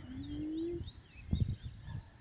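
Small birds chirping outdoors: many faint, quick, high chirps, with one low rising note of under a second at the start and a short thump about a second and a half in.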